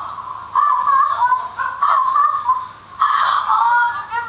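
Actors' voices laughing, heard thin and narrow as through a television speaker, in a few short runs.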